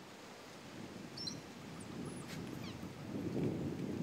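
Faint outdoor ambience with a few short, high chirping calls during the first half, some of them falling in pitch.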